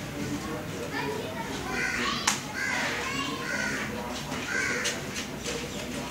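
Crows cawing repeatedly over distant voices, the calls starting about two seconds in, with one sharp click among them.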